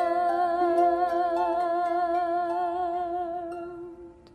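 Music at the end of a song: a long held note with vibrato over a sustained chord, fading away near the end.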